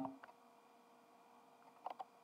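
Near silence with a faint steady hum, and one brief mouse click near the end.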